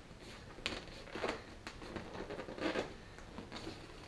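Hands pressing and rubbing the end of a reproduction padded dash pad to work it into shape: a few faint, short scuffing rustles.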